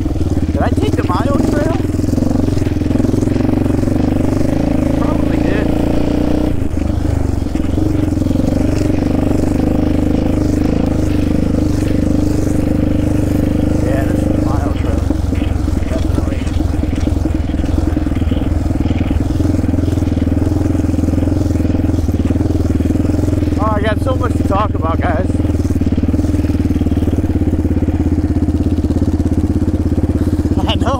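Yamaha Raptor 700R quad's single-cylinder engine running at a steady, loud cruise as it is ridden along a dirt trail, heard from the rider's helmet. The engine note holds nearly one pitch, with a brief dip about six seconds in and a rougher, rattlier stretch around the middle.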